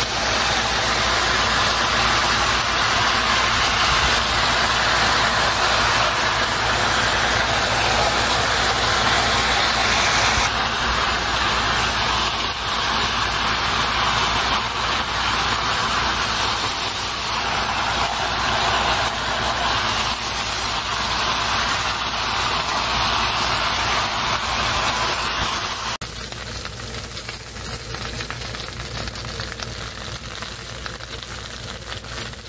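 Marinated chicken pieces sizzling steadily as they sear in hot oil in a pan. About four seconds before the end the sizzle drops to a quieter, thinner level.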